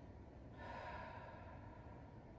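A person's single soft exhale, a breath out of under a second starting about half a second in, taken slowly while holding a deep stretch.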